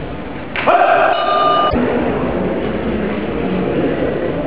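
A match buzzer sounds once, a steady tone of about a second that starts about half a second in and cuts off sharply, over the murmur of a sports hall.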